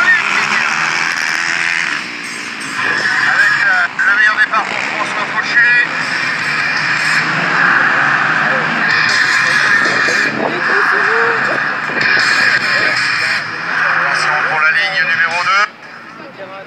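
A row of racing quads launching together from a mass start, many engines revving hard and rising and falling in pitch as they pull away. The sound drops off sharply near the end.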